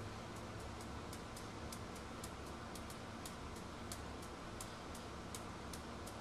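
Quiet room tone with a low steady hum, overlaid by a run of light, sharp high-pitched clicks, about three or four a second.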